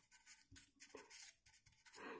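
Near silence with faint, intermittent scratching of a pen writing.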